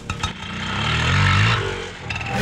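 A motor vehicle sound effect: engine noise with a low hum swells to a peak about a second and a half in, then fades, like a vehicle passing by.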